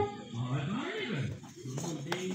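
A sustained blown horn note cuts off at the very start. What follows is quieter: a voice rising and falling in drawn-out, gliding sounds, with faint background murmur.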